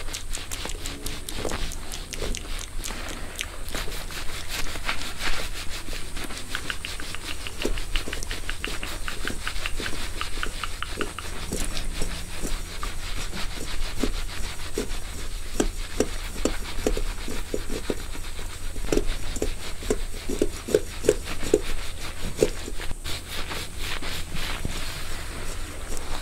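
A wire head massager and fingertips rubbing and scratching through a mannequin's wig hair close to the microphone: many small crackles, with a run of short strokes at about two a second in the second half.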